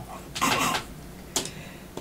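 A short breathy exhale about half a second in, then a single sharp click.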